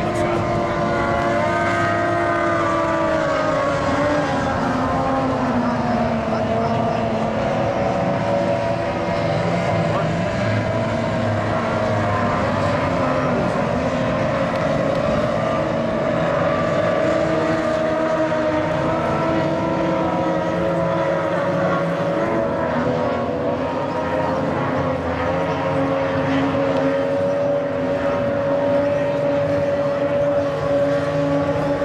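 Several 850cc-class racing boats' outboard motors running flat out, overlapping in a steady drone whose pitch drifts slowly up and down as the boats pass around the course.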